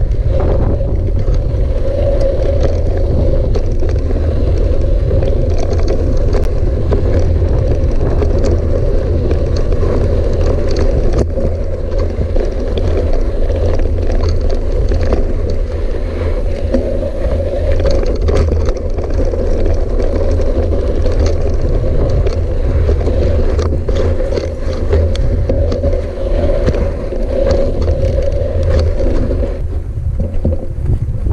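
Hardtail mountain bike rolling over a dry gravel and sand trail, heard through a handlebar-mounted camera: a loud, steady rumble of the tyres and frame, with many small clicks and rattles as the bike bounces over stones.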